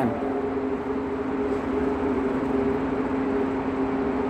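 Ventilation fans running: a steady mechanical hum with two steady low tones over a rushing of air.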